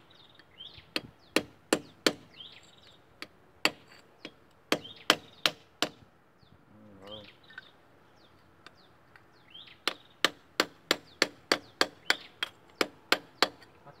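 Hammer striking a steel drift held against the bearing of an excavator final drive hub, driving the bearing out. Sharp metal blows come in irregular groups, then a pause of a few seconds, then a quick run of about three blows a second near the end.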